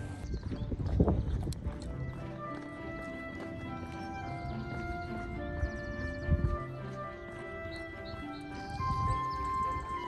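Background music of steady held notes that change in steps, with a few low thumps about a second in, around six seconds in and near the end.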